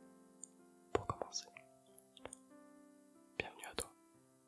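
A man whispering close into a microphone in two short bursts, about a second in and near the end, over soft background music of held notes.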